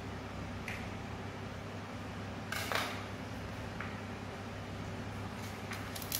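A steady background hum, with a few brief scrapes and clicks of a knife cutting and peeling papaya; the loudest comes about two and a half seconds in.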